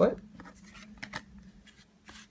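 A few short rustles and taps of Pokémon trading cards and a foil booster pack being handled and picked up, after a brief spoken exclamation.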